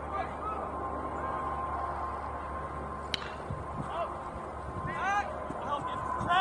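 Outdoor baseball-field ambience during a pitch: one sharp crack about three seconds in, then a string of short rising-and-falling calls near the end, over a faint steady high tone.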